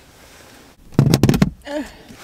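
A quick cluster of loud knocks and clicks lasting about half a second, a little after the midpoint: handling noise from the camera being moved and bumped close to its microphone.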